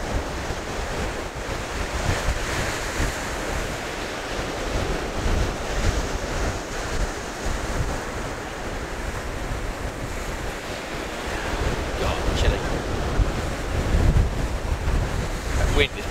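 Sea waves breaking and washing up the beach, with wind buffeting the microphone in gusts.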